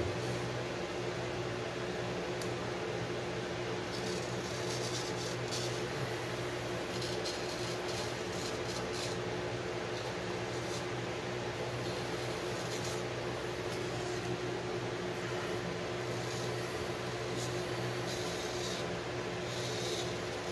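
A steady low mechanical hum fills the room, and over it come faint, short scratchy strokes of a straight razor cutting a week's growth of stubble through lather, at several moments.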